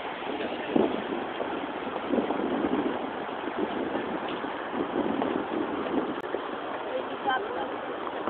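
Steady rushing outdoor noise of wind and sea surf, with indistinct voices of people talking now and then.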